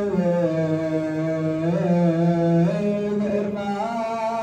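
Male voices chanting an Ethiopian Orthodox hymn (mezmur) in one continuous phrase of long held notes that bend slowly up and down in pitch.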